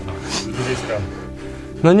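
Background music with steady held tones; a man starts speaking near the end.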